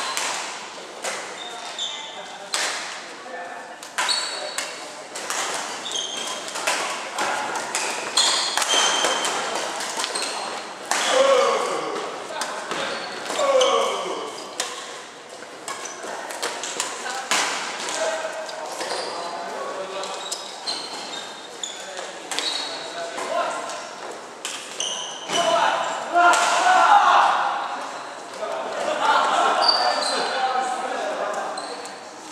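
Badminton rackets hitting shuttlecocks in a large reverberant hall: a steady run of sharp, irregular smacks from several games at once, with short high squeaks of sports shoes on the wooden court floor.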